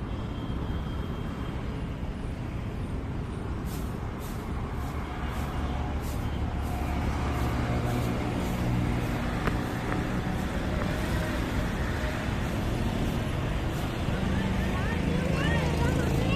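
Road traffic on the street alongside: a steady low rumble of passing vehicles, with one vehicle's engine growing louder through the second half.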